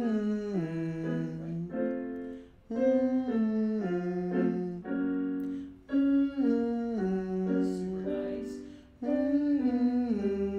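Vocal warm-up exercise: a piano plays short descending note patterns while a male voice sings along on a hum, the phrase repeated about every three seconds.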